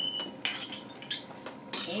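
Metal finger cymbals (zills) clinking and clattering as a pair is handled and set down: a few short, dull clinks with little ring. Near the start, the ring of an earlier strike fades out.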